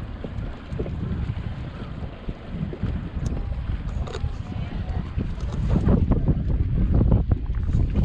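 Wind buffeting the microphone on an open boat deck: an uneven low rumbling noise that gets stronger in gusts in the second half.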